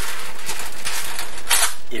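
Scattered clicks of a computer keyboard being typed on over a steady hiss, with a short burst of hiss about one and a half seconds in.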